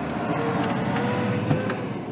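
Steady rushing background noise inside a parked car's cabin, with a single knock about one and a half seconds in.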